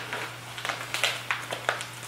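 Crinkling and rustling of a packaged coffee bag being handled and opened, a quick series of sharp crackles.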